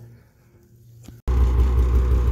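About a second of near silence, then a sudden cut to a Polaris Pro RMK 850 snowmobile's two-stroke twin idling steadily with a low, even note. The sled is being run to work the air out of its coolant lines.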